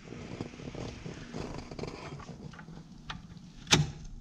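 Light handling noises of plastic soda-fountain dispenser parts over steady background room noise, with a small click about three seconds in and a sharp plastic knock near the end as a diffuser is pushed up into a dispenser valve.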